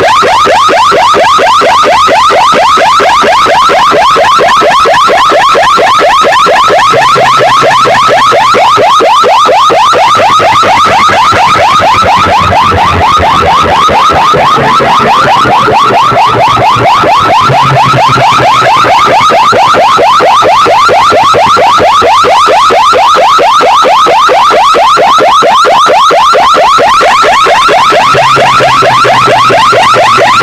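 A stack of horn loudspeakers blaring a siren-like warble at full volume. A quick upward sweep repeats many times a second, steady and unbroken.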